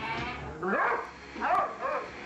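Two dogs, one a Doberman, play-fighting, with two loud barks a little under a second apart, each rising and then falling in pitch.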